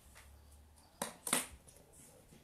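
Two short rustling knocks about a third of a second apart, a second in: handling noise close to the microphone.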